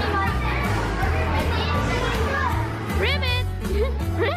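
Music with a steady bass line, mixed with the voices of children at play; one child gives a high-pitched squeal about three seconds in.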